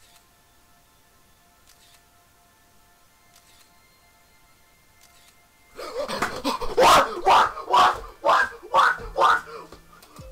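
Soft, steady background music for the first few seconds, then a young man screaming in excitement: a run of loud, high yells, about two a second, to the end.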